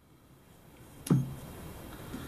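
A single sharp knock about a second in: the Yeti Rambler HotShot's plastic cap being set down on the tabletop. Otherwise only faint handling noise.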